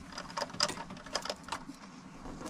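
A fabric curtain tab with a metal press stud being handled and hooked in place, giving a string of light, irregular clicks.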